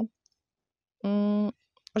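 A woman's voice, silent for about a second, then holding a hesitation sound on one steady pitch for about half a second, followed by a soft mouth click just before her speech resumes.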